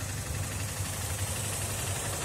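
Dafra Apache 200's single-cylinder four-stroke engine idling steadily with an even low pulse.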